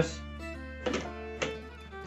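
A keyless 3/8-inch drill chuck on an impact driver adapter clicks twice, about half a second apart, as it is twisted tight by hand. Quiet background music runs underneath.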